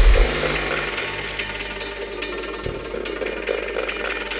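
Psychedelic downtempo electronic music. The heavy bass and beat drop out just after the start, leaving a quieter, thinner stretch of synth texture with sparse ticking percussion.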